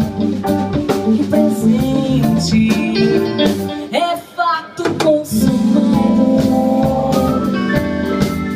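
Live band playing an MPB groove: Nord Stage keyboard on an organ-like sound, electric bass, drum kit and guitar, with the singer's wordless vocal over it. About four seconds in the band thins out to a short break of sliding notes, then comes back in full a second later.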